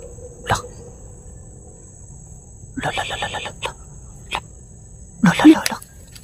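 Short bursts of a low human voice, a rapid stuttering sound about three seconds in and a louder grunt-like sound about five seconds in, with a few sharp clicks. A steady high insect drone runs beneath.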